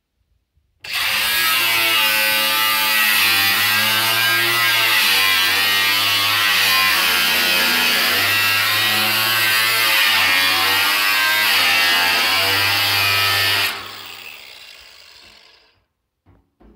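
Angle grinder cutting into the steel lid of a drum. It starts about a second in, runs loud and steady with a wavering whine as the disc works through the metal, then is switched off near the end and winds down over about two seconds.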